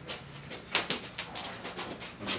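A tossed coin landing on the floor about three quarters of a second in, bouncing a few times with a high metallic ring that lasts about a second.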